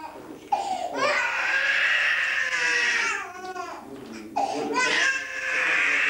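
Infant crying hard in two long wails, the first starting about half a second in and the second a little past the middle, with short broken sobs and a catch of breath between them.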